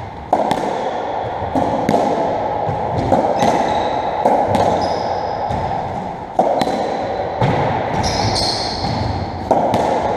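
Racketball (squash57) rally on a squash court: the ball cracks off rackets, walls and floor about once a second, each hit ringing on in the court. Short high squeaks, typical of shoes on the wooden floor, come between the hits.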